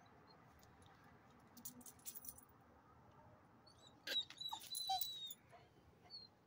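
A dog barking in short sharp bursts, faint about a second and a half in, then louder and with a high whining tone about four to five seconds in.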